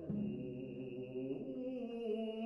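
Slow art song for baritone voice and viola da gamba: low notes held steadily, moving to a new note right at the start.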